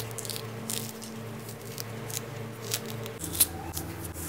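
An orange being peeled by hand, its peel and pith tearing away and the segments being pulled apart in a run of small, soft crackles and ticks.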